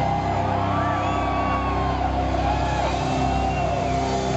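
Sustained amplified drone from the band's instruments ringing on as the live rock song ends, with crowd shouts and whistles rising and falling over it.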